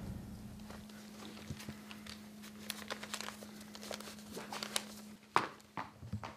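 Faint scattered clicks and rustles of movement over a steady low hum, with one sharper knock a little after five seconds; the tail of a music hit dies away in the first second.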